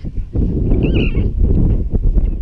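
Wind buffeting the microphone with a heavy, fluttering rumble, and a short, high, wavering call about a second in.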